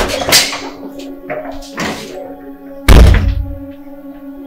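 A door slammed shut with one heavy thunk about three seconds in, over steady background music.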